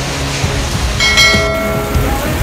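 Storm wind and heavy rain rushing steadily. About a second in, a bell-like chime of several ringing tones starts and rings to the end: a notification-bell sound effect for the on-screen subscribe button animation.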